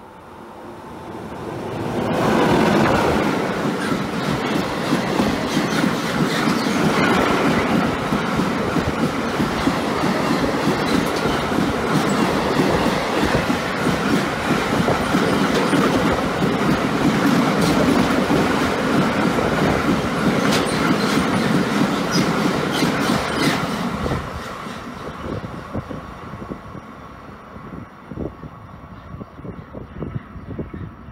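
Freight train passing at speed, a long rake of empty car-carrier wagons with a steady rumble and wheels clattering over the rail joints. It builds over the first two seconds, stays loud, and drops off sharply about 24 seconds in as the last wagon goes by, then fades.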